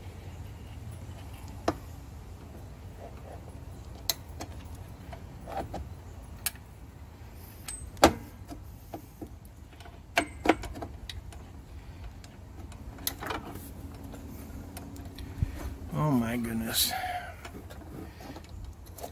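Small steel parts, a washer and the steering shaft hardware, clinking and tapping as they are handled and fitted by hand: a scattering of sharp metallic clicks, the loudest about halfway through. A brief muttered voice near the end.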